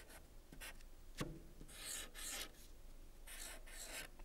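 Blue marker pen writing on a paper sheet: a few short, hissy strokes, one about a second in, a longer pair in the middle and another near the end, with a sharp tick about a second in.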